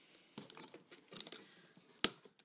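Faint, scattered rustling and crinkling of packaging as a decorative ornament is unwrapped by hand.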